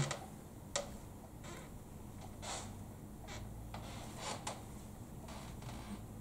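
Laptop keyboard keys being typed: a handful of scattered, separate key clicks while a terminal command is entered, over faint room tone.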